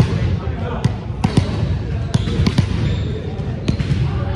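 Balls being struck and bouncing on a hardwood gym floor: a string of irregular sharp thuds, about eight over the few seconds, over indistinct voices and the low rumble of the hall.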